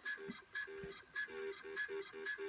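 Apple IIe playing an Electric Duet tune as a string of short, beeping square-wave notes, about four a second, with the Disk II drive's head arm stepping in time with the notes and adding a light ticking.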